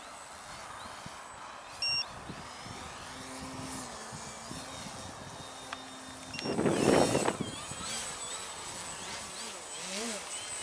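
Electric motor and propeller of a foam aerobatic RC plane, its whine rising and falling as the throttle and distance change, peaking in a loud close pass about seven seconds in. A short beep sounds about two seconds in.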